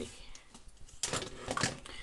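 Plastic Transformers action figures being handled: one moved away and another picked up, with a few light plastic clicks and rustles about a second in.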